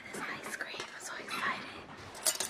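Soft whispered speech, breathy and without much voice, from a woman close to the microphone.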